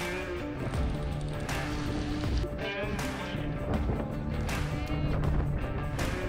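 Background music with a steady beat, a strong accent coming about every second and a half under held tones and a wavering melody.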